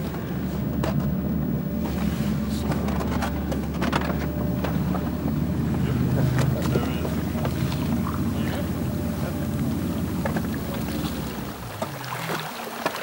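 A Zodiac inflatable boat's outboard motor running at a steady speed with a low hum, easing off just before the end, with scattered light knocks over it.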